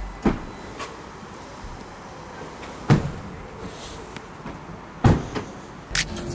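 SUV doors being opened and shut: a few dull knocks over a quiet background, the loudest about three and five seconds in.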